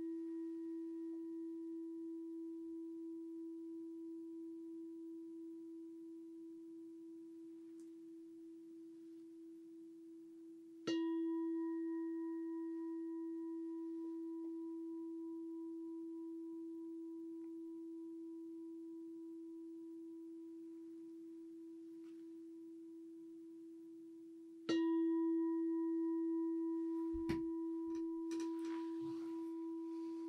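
A meditation bell of the singing-bowl kind struck twice, about 14 seconds apart. Each strike gives a clear low tone that rings on and slowly fades, and the ring of an earlier strike is still fading at the start. Near the end come a click and some light rustling.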